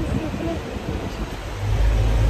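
Street traffic: a low motor-vehicle rumble that swells as a vehicle comes closer about a second and a half in.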